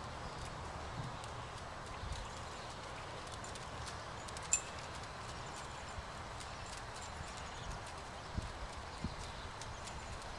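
Soft, scattered hoofbeats of an unshod horse moving on arena sand, over a steady faint hiss, with one sharp click about halfway through.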